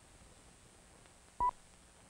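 A single short, steady electronic beep, about a tenth of a second long, about three quarters of the way in, over the faint steady hiss of an old optical film soundtrack.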